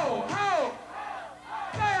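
Voices shouting long cries that fall in pitch, several in a row, with a brief lull about a second in.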